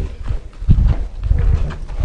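Wind rumbling on the microphone, with a few short knocks, the sharpest about two-thirds of a second in.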